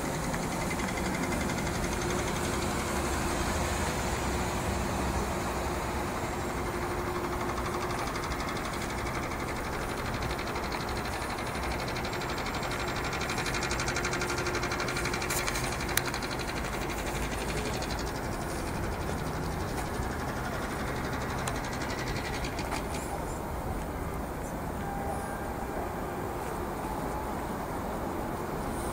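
Steady rushing street noise of traffic and wind, with a single brief click about halfway through.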